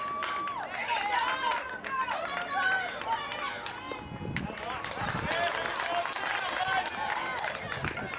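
Spectators at a youth baseball game shouting and cheering, many voices overlapping, with one long held shout at the start. A sharp crack comes just after the start as the bat meets the ball, and another sharp smack about four seconds in as the throw reaches the first baseman's glove.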